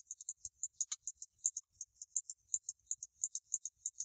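Faint, quick light clicks from a computer pointing device, about six a second and slightly uneven, while a texture seam is painted out in Photoshop.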